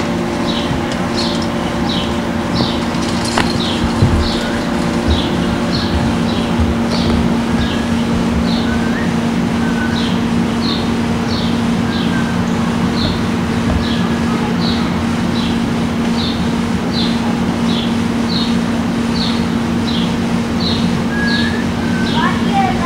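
A bird chirping steadily, short high chirps at about one and a half a second, over the constant low hum and hiss of a worn VHS recording.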